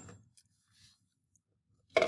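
Near silence with a couple of faint ticks, then one sharp knock near the end.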